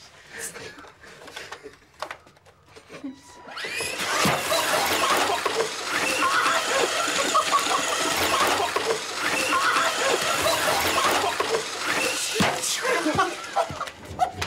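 A group of men laughing loudly and exclaiming, starting suddenly about four seconds in and carrying on for nearly ten seconds, after a few quieter seconds.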